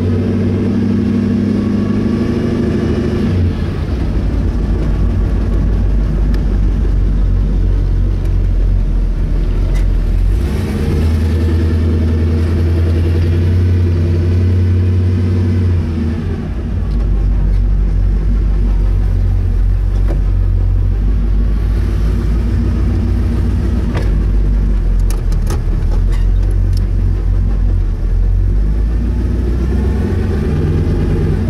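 Pro Street Chevy Nova's engine running loud and deep at low cruising speed. Its note steps between a lower and a higher pitch a few times as the throttle changes.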